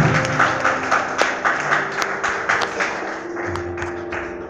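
A small audience claps unevenly as the last sung and played note of a Carnatic piece stops, the claps thinning out over a few seconds. A steady drone tone holds underneath and comes up about three seconds in.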